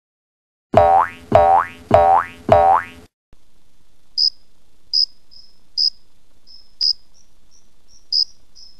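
A cartoon boing sound effect four times in quick succession, each a springy twang that sweeps in pitch. Then crickets chirping, one high chirp about every three-quarters of a second, the stock sound gag for an empty head.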